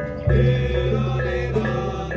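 Balinese traditional performance music with held, chant-like notes over a steady low tone; a new phrase begins and the sound grows louder about a quarter second in.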